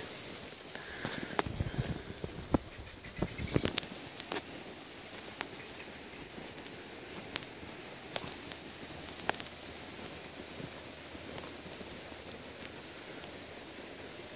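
Footsteps and rustling through overgrown grass and undergrowth: a run of crackles and soft thumps in the first few seconds, then only a faint steady hiss with an occasional click.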